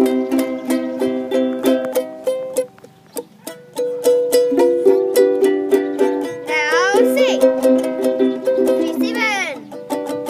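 Two Mahalo ukuleles strummed together in quick, even down-strokes, about four strums a second. The strumming breaks off briefly about three seconds in and resumes on a different chord, the change to C.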